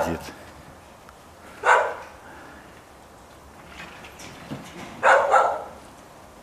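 Two harsh barking calls from young red foxes: a short one about two seconds in and a longer one near the end.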